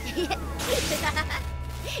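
Sci-fi electric zap sound effect: a tone sliding down in pitch, then a hissing whoosh a little over half a second in, over a steady background music bed.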